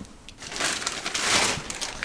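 Rustling and crinkling of packaging being handled close to the microphone, a noisy stretch from about half a second in lasting a little over a second.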